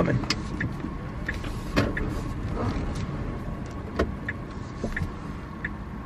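Cabin noise of a slow-moving Tesla electric car: a steady low rumble of tyres on the road with no engine note, broken by a few scattered sharp clicks.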